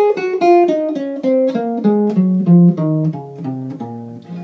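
Archtop hollow-body jazz guitar plucked without a pick, playing a C-sharp major scale as a run of single notes that step steadily downward, about four notes a second.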